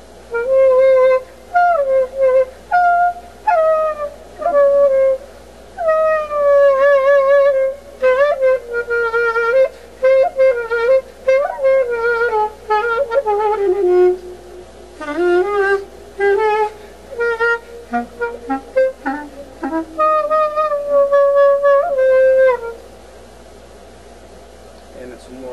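Solo clarinet played in Greek folk style: a single melodic line full of slides, pitch bends and vibrato, the notes shaded by partly opening and closing the tone holes to give a sighing, crying sound. It stops near the end.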